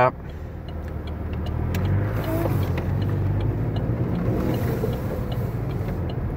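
Road and engine noise inside a moving car's cabin: a steady low rumble that grows a little louder over the first two seconds, then holds.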